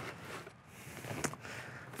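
Faint handling noise of parts and packaging being set down and picked up on a workbench, with a single light click a little over a second in.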